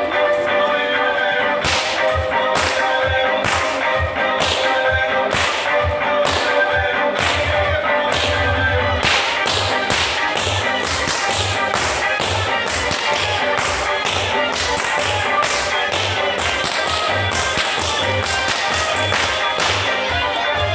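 Whip cracks, sharp and repeated: about one a second at first, then faster in quick runs from about halfway, over music.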